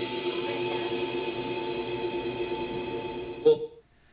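Ghost box audio from the SCD-1 software fed through the Portal echo box: several steady, echoing held tones that slowly fade, then a short blip and a sudden cut-off near the end.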